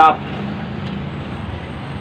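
Steady background noise, an even rumble and hiss with no distinct events, after a man's word ends at the very start.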